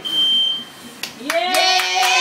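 Clapping and a long held cheer from a small group, starting about a second in, greeting birthday candles just blown out. A steady high electronic beep sounds at the very start.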